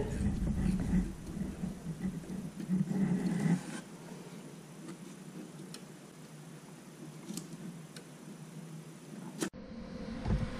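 Faint handling sounds of steel MIG welding wire being fed by hand from the spool into the welder's wire-feed drive rolls, louder for the first few seconds and then dying down to quiet with a few light ticks.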